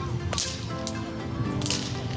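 Braided whip cracking, a few short, sharp cracks over background music.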